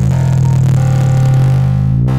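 Electronic oscilloscope music: synthesized stereo tones whose waveforms draw vector graphics, heard as a steady low drone with many shifting overtones.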